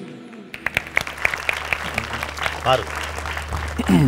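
Applause: scattered hand clapping that starts about half a second in and carries on, with voices calling out near the end.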